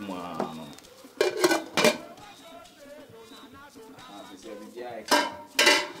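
Metal cookware clattering: two pairs of sharp clanks, about a second in and again near the end, as a stainless-steel pot is handled and covered with its lid.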